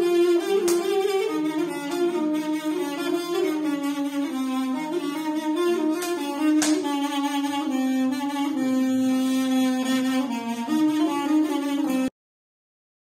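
A folk reed wind instrument playing a slow melody of long held notes that step and slide between pitches, cutting off suddenly at the end.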